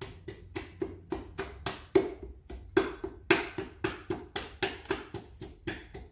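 Repeated taps of a hammer's handle end on a piston crown, driving the ring-packed piston through a ring compressor down into the cylinder bore of a small-block Ford V8, at roughly three to four taps a second with some hits harder than others, until the piston is in.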